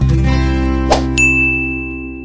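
Outro jingle: a held musical chord, with a sharp click just under a second in followed by a high sound-effect ding that rings on as the whole slowly fades.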